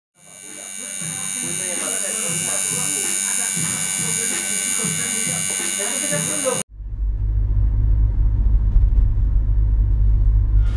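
Electric tattoo machine buzzing steadily, fading in at the start, with voices in the background; it cuts off abruptly about two-thirds of the way in. A steady low rumble inside a car follows.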